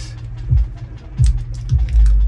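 Background music: a low, steady bass line with a few drum thumps.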